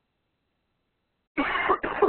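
Silence, then about one and a half seconds in a man starts to cough loudly, the opening of a short coughing fit.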